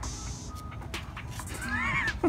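A person's short, high-pitched laugh near the end, rising and falling in pitch, over faint background music.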